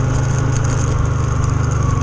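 Motorcycle engine running steadily under way on a rough gravel track, an even low rumble with a constant hiss over it.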